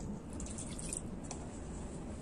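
Whisk stirring flour and water into a wet batter in a glass bowl: soft liquid squishing with a few light ticks.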